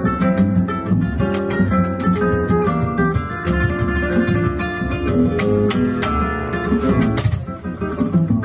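Solo nylon-string flamenco guitar playing a soleá por bulerías: quick runs of plucked notes broken by sharp accented attacks, with a brief softer passage near the end.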